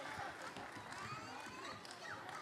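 Faint chatter of many overlapping voices in a congregation, with no single speaker standing out.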